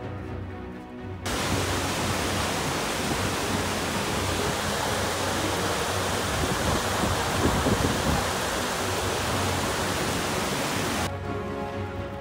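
Chorrillo del Salto waterfall: a steady, loud rush of falling water that cuts in about a second in and cuts off about a second before the end. Background music plays on either side of it.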